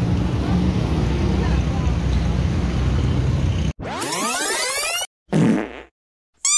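Low street traffic rumble, then a hard cut to edited-in comedy sound effects: a rising sweep lasting about a second, followed by a short, loud fart sound effect.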